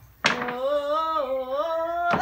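A young person's voice sings one long held note, starting suddenly about a quarter second in, its pitch wavering slightly and lifting near the end.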